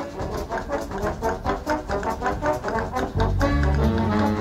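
A jazz big band playing with its brass section to the fore: quick, short accented ensemble notes, about four a second, over drums and cymbals. The low bass drops back and comes in strongly again about three seconds in.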